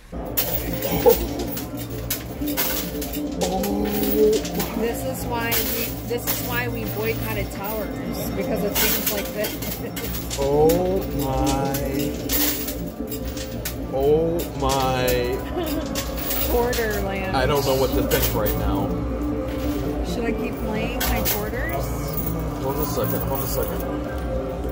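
Casino arcade din around a coin pusher: machine music with a singing voice, many sharp clicks and clinks of coins, over a steady low hum.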